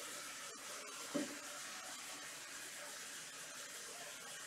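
Steady hiss of background noise through the microphone, with one brief, short low sound about a second in.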